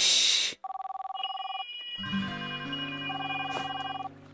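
A short, loud, noisy burst, then a cell phone ringtone: a fast two-tone electronic trill for about a second, going on from about two seconds in as a steady run of electronic tones.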